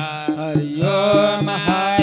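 A Hindu devotional aarti to Shiva, sung as a melodic chant with musical accompaniment and a steady percussion beat.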